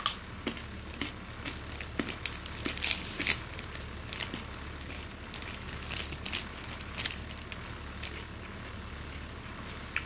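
Plastic bag of cut and peeled baby carrots crinkling and crackling as it is opened and handled, a cluster of sharp crackles in the first few seconds and a few scattered ones later, over a low steady hum.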